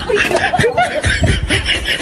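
A person laughing in a run of short chuckles.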